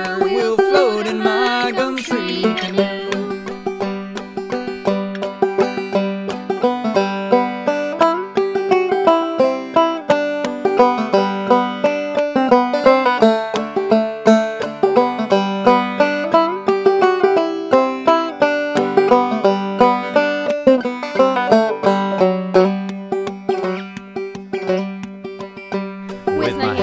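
Banjo played clawhammer style: a lively instrumental break of quick plucked melody notes, with a steady repeated high drone note running underneath.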